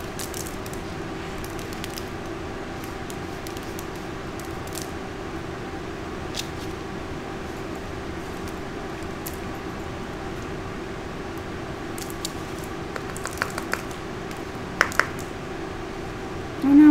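A steady low hum with a constant tone runs throughout. Scattered light clicks and taps come as a coaster is handled on paper, with a small cluster of them near the end.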